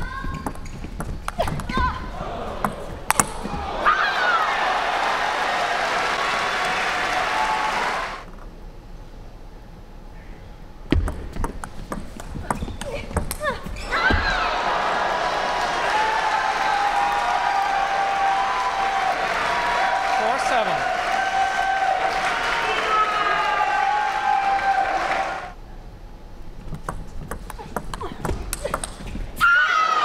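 Table tennis rallies: the plastic ball clicking off bats and table in quick exchanges. After a rally about four seconds in, and again after one around 11–14 s, there are several seconds of crowd cheering and shouting. Another rally starts near the end.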